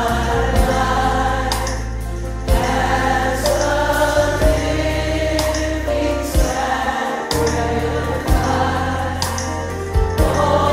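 Worship song with a group of voices singing over band accompaniment, a strong bass line and a slow beat about every two seconds.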